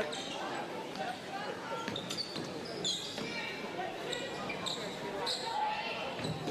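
Basketball court sound in an indoor arena: a ball bouncing on the hardwood floor, a few short high sneaker squeaks, and distant voices of players and crowd echoing in the hall.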